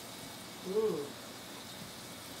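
A man's short hummed 'mm' of enjoyment, its pitch rising then falling, about half a second in, made with a bowl of gravy at his lips; otherwise only faint room hiss.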